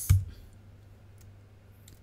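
A single sharp, loud keystroke with a low thud on a computer keyboard just after the start: the Enter key confirming an overwrite at a terminal prompt. A few faint key clicks follow.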